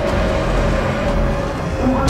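A bus driving past, its engine running with a low rumble, under one steady held tone from the background music.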